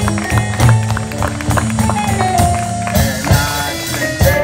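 Live electric blues band playing an instrumental stretch between vocal lines: electric guitar and electric bass over a steady drum kit beat, with keyboard.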